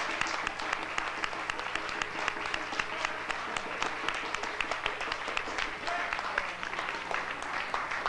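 Audience applauding, dense clapping at a steady level.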